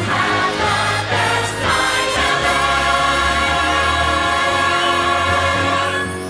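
A musical number sung by an ensemble of voices over orchestral backing. From a little over two seconds in, the voices hold one long chord, which breaks off at the very end.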